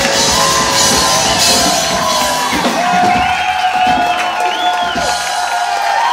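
Live rock band playing the closing bars of a song, with cymbals crashing. About halfway through the bass and drums drop out, leaving a held note while the audience cheers and whoops.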